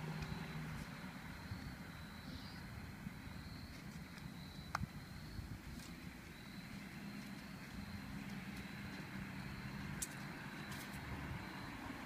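Quiet outdoor background: a low steady rumble with a faint steady high tone above it, and a few faint clicks, the clearest about five seconds in and again about ten seconds in.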